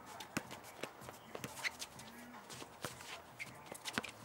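Players' sneakers scuffing and squeaking on a hard basketball court as they run, with a basketball bouncing as it is dribbled: a string of sharp knocks and a few short squeaks.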